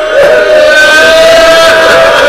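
A man's voice holds one long, high, slightly wavering note of a chanted majlis lament, with other voices from the mourning crowd beneath it.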